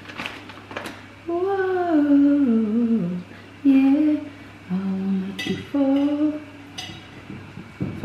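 A woman humming a tune to herself in several melodic phrases, the longest one sliding downward, with a few light clicks and knocks from handling food in a dish.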